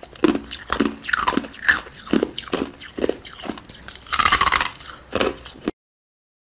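Teeth biting and crunching through sticks of frozen coloured ice, a sharp crunch about twice a second, then the sound cuts off abruptly near the end.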